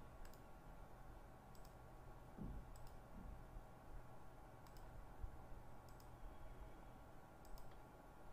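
Near silence: faint room tone with a low steady hum and about six faint, sharp clicks at irregular intervals.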